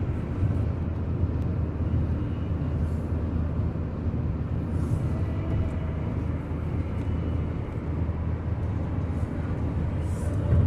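Steady road and tyre noise with engine rumble inside a car's cabin at highway speed.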